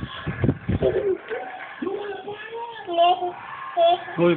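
A young child's voice cooing and babbling in high, wavering wordless sounds, with a few dull thumps of the camera being handled in the first second.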